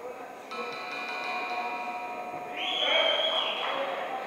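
A sustained signal tone made of several steady pitches starts suddenly about half a second in and holds for about two seconds. It gives way to a louder, shrill high tone with a rush of noise near the three-second mark.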